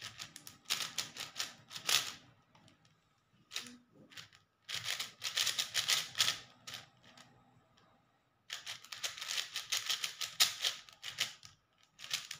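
A plastic 4x4 speed cube being turned fast by hand, its layers clicking rapidly like typing, in three runs of turns with short pauses between them.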